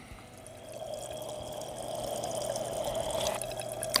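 Freshly acid-filled Yuasa YTX12-BS AGM motorcycle battery percolating: a steady fizzing and bubbling from inside its cells, heard close over the open fill holes and growing louder over the first second or two. It is the sulfuric acid reacting with the lead plates as the battery activates, giving off gas and heat.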